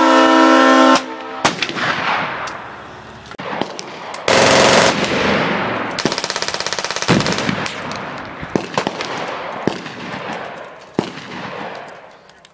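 Automatic gunfire with echoing tails. It comes as several bursts, one lasting about a second at roughly eleven shots a second, with single sharp cracks between them. A loud pitched blare fills about the first second.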